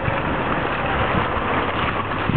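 Metal shopping trolley being wheeled across tarmac, its wire frame and castors rattling steadily.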